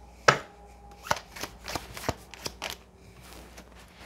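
Tarot cards being shuffled and handled, with one sharp snap a moment in, the loudest sound, then a quick run of smaller card snaps and a softer rustle near the end.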